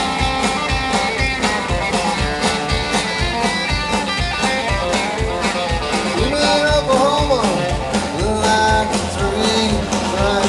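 Live country-rock band playing an instrumental passage through a PA: guitars over a steady drum beat, heard from within the crowd.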